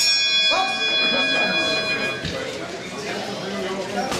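Boxing ring bell struck once, ringing for about two seconds and then cut off, signalling the start of a round. Voices in the hall carry on underneath.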